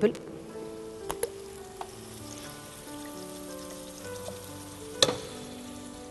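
Onions and octopus frying in oil in a pot, a faint steady sizzle. A few light knocks come about a second in, and a sharper one about five seconds in.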